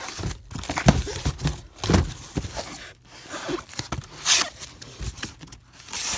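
Cardboard carton and packaging rustling and scraping as gloved hands dig through it, with scattered bumps and a louder scrape about four seconds in.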